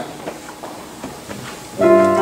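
Faint shuffling and knocks in a quiet church hall. Near the end a keyboard starts a sustained chord, the opening of a hymn accompaniment.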